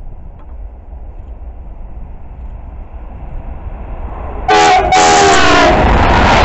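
Freight train approaching with a rumble that grows steadily. About four and a half seconds in, the locomotive sounds its multi-tone horn in two loud blasts, a short one and then a longer one falling slightly in pitch as it nears. The loud rush of the wagons going past follows.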